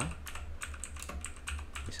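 Typing on a computer keyboard: a quick run of keystrokes, several a second, as a word is typed.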